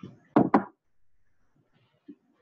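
Typing on a laptop keyboard: two loud, sharp knocks close together less than a second in, then a few faint keystrokes.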